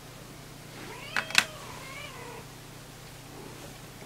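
Domestic cat meowing: a drawn-out meow about a second in and a shorter, fainter one around two seconds. Two sharp clicks come during the first meow.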